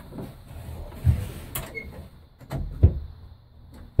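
Custom tailgate handle and latch on a Holden panel van being worked, the latch releasing and the tailgate swinging open: a few clicks and metal clunks, the sharpest about three quarters of the way through.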